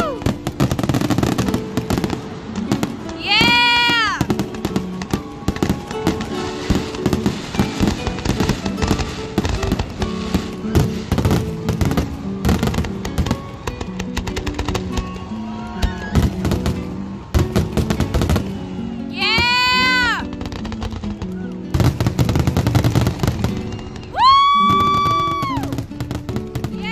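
Fireworks display: a steady run of bangs and crackling bursts, with music playing underneath. Three loud high whistles cut through, one a few seconds in, one near the middle and one near the end.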